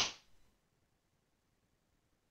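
Near silence after a spoken word trails off in the first instant.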